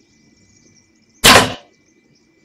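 A single sharp thwack of a hunting bow shot at close range about a second in, the arrow striking a baboon, fading quickly.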